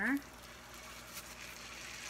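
Salmon fillet sizzling in hot olive oil and butter on a flat griddle, a steady, faint hiss with a few light crackles just after the fish is laid down.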